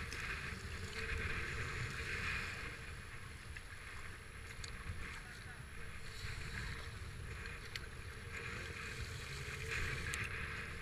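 Water rushing and splashing against a racing kayak's hull and paddle blades as it is paddled through choppy river water, the splashing swelling and easing with the strokes. Wind rumbles low on the microphone underneath.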